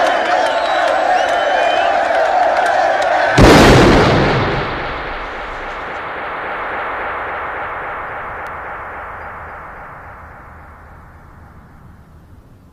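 A large crowd cheering, cut off about three seconds in by a single loud gunshot whose echo dies away slowly over several seconds.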